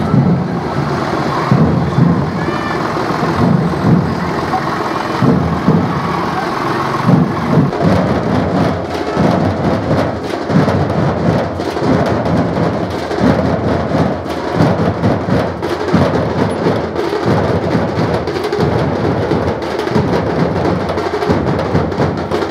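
Massed dhol drums of a dhol-tasha troupe, large barrel drums beaten with sticks in a loud, steady, repeating rhythm.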